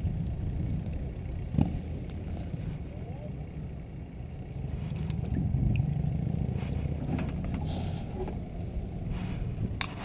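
Low steady rumble of wind and water around a plastic kayak, with a sharp knock about one and a half seconds in and a few light clicks and scrapes later as a caught fish is handled in the boat.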